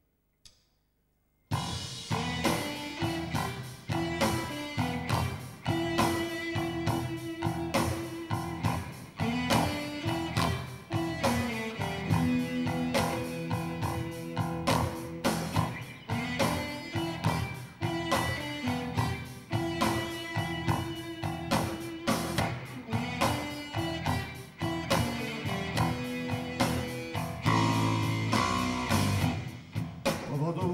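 After a couple of sharp clicks, a rock band comes in about a second and a half in: two electric guitars, a Telecaster-style and a Les Paul-style, over bass guitar and drum kit, playing a song's instrumental intro with a steady beat.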